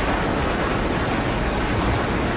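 Glacier ice calving into the sea: a steady, continuous rumble and wash of crashing ice and water.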